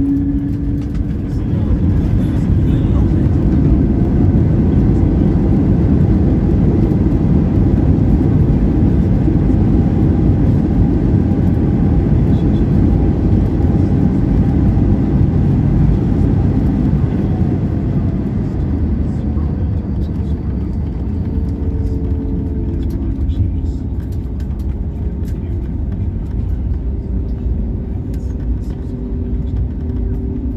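Inside an airliner cabin during the landing rollout, a loud, steady rumble of jet engines and wheels on the runway. It eases off over the second half as the plane slows.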